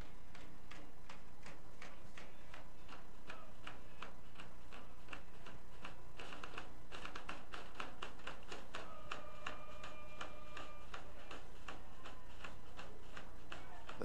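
Steady low hum with many faint, irregular clicks and ticks, and a short held tone about nine seconds in.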